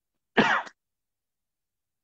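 A person clearing their throat once, a short burst of under half a second.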